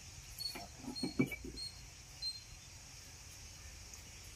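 Steady high buzz of insects, with a short cluster of soft knocks and handling sounds about a second in and a few brief high peeps.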